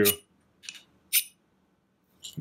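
Ferro rod (flint igniter) scraped twice along the steel of a small hatchet: two short, high scrapes about half a second apart, the second louder. The rod still has kind of a coating on it.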